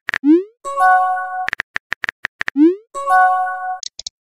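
Messaging-app sound effects, played twice over: a quick run of clicks, a short rising pop, then a brief chime of several steady notes, one round for each new message bubble.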